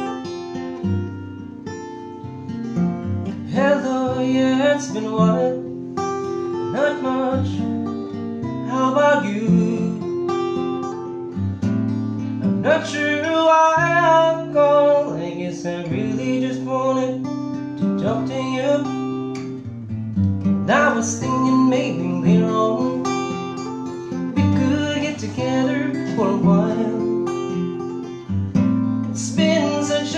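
Taylor acoustic guitar strummed in steady, changing chords while a man sings a slow song over it.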